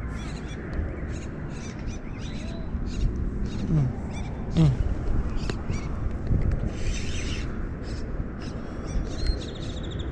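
Birds calling: repeated short high chirps, and two short low calls that fall in pitch a little before the halfway point, over a steady low rumble.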